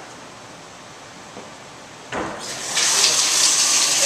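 Bathtub faucet turned on about halfway through, water gushing loudly and steadily into the tub as the fixture is tested to see that it works.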